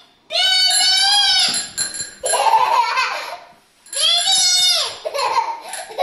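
A young child's high-pitched squeals: two long, drawn-out squeals with laughing between them.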